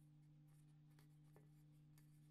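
Near silence over a steady low hum, with a few faint ticks and scrapes of fingers handling and flexing a thin sheet-metal disc from an electric heater; the clearest tick comes about a second and a half in.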